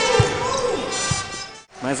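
Basketball bouncing on the court, two low thuds about a second apart, over arena crowd noise. The sound drops out briefly near the end.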